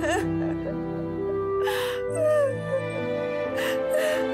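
A girl crying, with whimpers and sharp breaths, over slow background music of long held notes.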